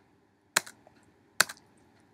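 Two sharp clicks about a second apart, from keys being pressed on a computer keyboard.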